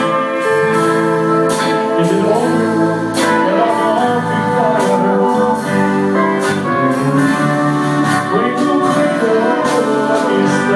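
Live country band playing a slow 6/8 number: fiddle, acoustic and electric guitars, bass and drums, with a drum accent about every second and a half.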